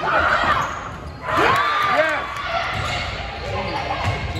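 Indoor volleyball play echoing around a gymnasium: shouting voices over ball hits and court sounds. The noise swells at the start and again about a second and a half in.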